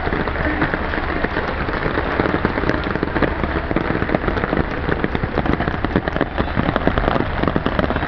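Heavy rain falling onto standing floodwater: a dense, steady hiss full of countless tiny drop impacts.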